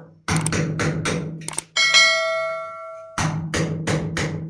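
A hammer driving a steel chisel into ceramic wall tile around an old flush cock valve: quick, sharp metallic blows, about five a second. Partway through, a bell-like notification chime rings out and fades over about a second and a half, and then the blows resume.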